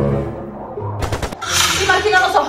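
Quiet background music, then about a second in a quick rattle of sharp bangs, followed by a rushing hiss of strong wind gusts, as in a storm with things banging about.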